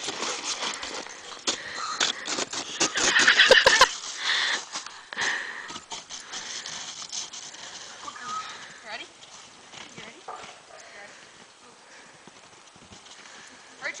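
Plastic sled scraping and clattering over snow and ice as a dog drags it. A dense run of scrapes is loudest about three to four seconds in, then the sounds thin out and grow fainter.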